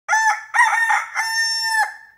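A crowing call in three parts, the pattern of a rooster's cock-a-doodle-doo: two short notes, then a long held high note that drops off near the end.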